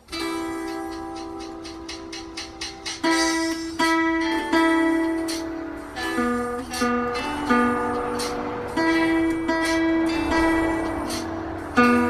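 A child's small nylon-string classical guitar played one note at a time: a simple melody of plucked single notes, softer for the first few seconds, then louder, with some notes held for about a second.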